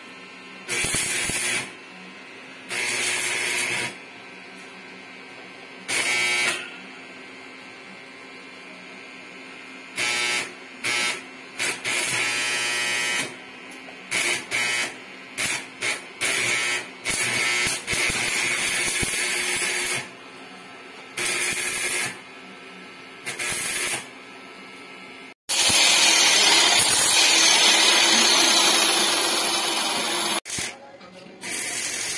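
Arc welder tack-welding a steel tube frame: repeated short bursts of arc noise, each a second or two long, over the welding machine's steady hum. In the last few seconds a louder, continuous noise takes over.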